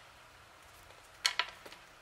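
A few light clicks and clacks of metal alligator clips on jumper leads being handled, clustered about a second and a quarter in.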